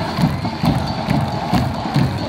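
Football supporters' bass drums beating a steady rhythm, a little over two beats a second, under a crowd chanting together.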